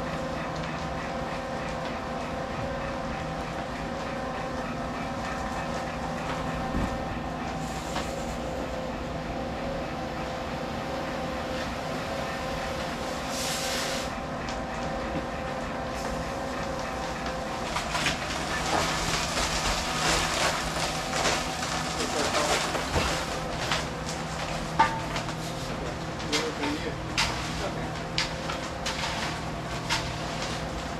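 Electric portable drum concrete mixer running with a steady hum while concrete turns in the drum. From about two thirds of the way through, scraping and knocking join in as the wet concrete is worked out of the tilted drum.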